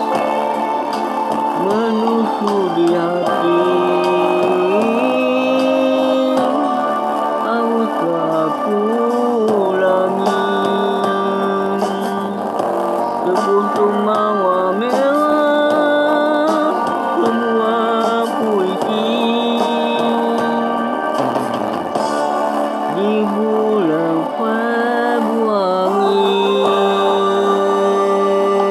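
A slow Malay-language pop song playing: a voice sings a sustained, gliding melody over steady band accompaniment.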